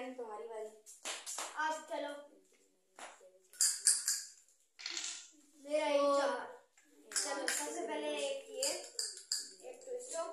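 Children's voices talking in short bursts, with a brief high hiss about three and a half seconds in.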